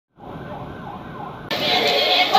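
Vehicle siren wailing, muffled, with rising and falling pitch. About one and a half seconds in it is cut off abruptly by louder, fuller sound as the song begins.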